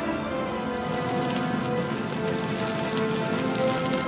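Orchestral film score with held notes, over the dense crackle of burning flames.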